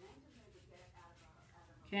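Faint, light scratching and handling as tailor's chalk marks the fabric along the edge of a tissue paper pattern.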